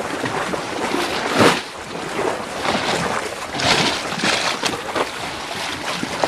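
Shallow seawater sloshing and splashing, with a few louder surges, and wind buffeting the microphone.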